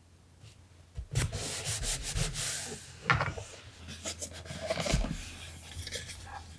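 Hands handling a wooden box with metal studs over a paper journal: after a quiet first second, the box rubs and scrapes across the paper, with a knock about three seconds in and a duller thump near the end.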